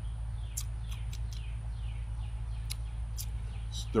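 Backyard ambience: small birds chirping now and then, short high chirps and a few falling calls, over a steady low hum and a steady thin high-pitched tone.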